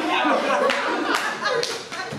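Audience applauding, with voices mixed in.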